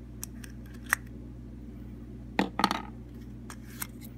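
Small plastic toy parts and a folded paper leaflet handled and pulled out of a Kinder Surprise's yellow plastic capsule: a few scattered light clicks, with a denser patch of clicking and rustling a little past halfway.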